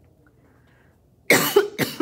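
A woman coughing twice in quick succession, starting a little over a second in.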